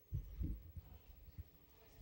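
A few soft, low thumps of handling noise on a desk microphone, two close together near the start and a fainter one later, over faint room hum.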